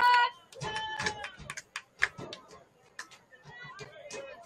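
Shouting voices of soccer players and spectators, with a loud shout that breaks off just after the start and fainter calls later. A few sharp knocks cut through, the loudest about two seconds in.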